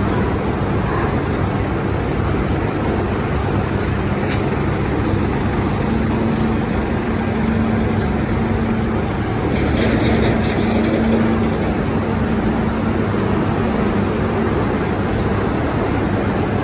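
Steady low drone of diesel tractor engines and the cane-unloading machinery running while the hydraulic ramp tilts a loaded tractor-trolley, with two faint clicks partway through.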